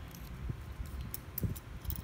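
Faint plastic clicks and handling noise as the battery door of a Magicsee Z2 Pro action camera is worked open, a few separate small ticks over about two seconds.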